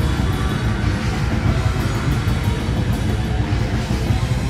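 Live metal band playing loud, dense distorted music with a heavy, unbroken low end.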